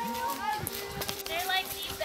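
Outdoor sound of brief, high, wavering vocal sounds and a few light knocks, over the held tones of a soft ambient music bed.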